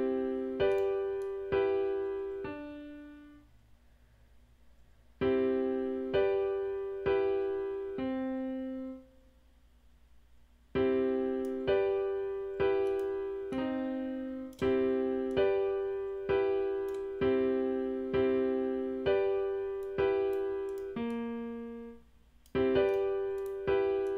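FL Studio's sampled Grand Piano playing back a looped chord pattern from the piano roll: repeated piano notes and chords struck about twice a second, each dying away, twice dropping out for under two seconds.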